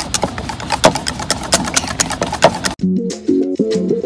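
A wire whisk beating a thick corn flour and water mixture in a bowl: rapid, irregular clicks and scrapes. It cuts off abruptly about three-quarters of the way through, giving way to electronic music with a stepping melody and a ticking beat.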